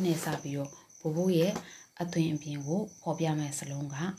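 A person speaking in phrases with short pauses, over a faint, steady, evenly pulsing high-pitched tone in the background.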